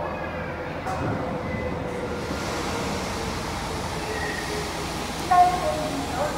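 Osaka Metro 80 series linear-motor subway train approaching and pulling into an underground platform, its running noise growing louder from about two seconds in, with a faint whine under it.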